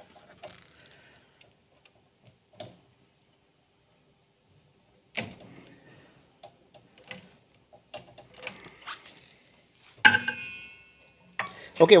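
Small metallic clicks and knocks from a stirrer shaft being loosened by hand and detached from its motor coupling on a lab batch reactor. There is a sharper clink about five seconds in, and a louder clink about ten seconds in that rings briefly.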